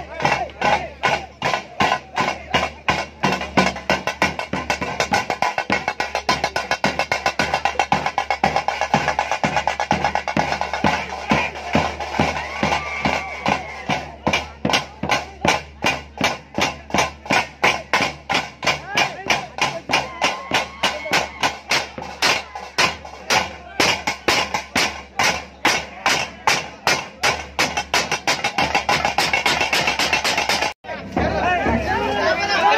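Fast, steady drumming with a strong regular beat, and a crowd's voices shouting over it.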